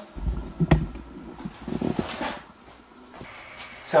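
Rumbling handling noise with a sharp click about a second in. Near the end a steady electric hum sets in from the preheating Monoprice Select Mini (Malyan) 3D printer.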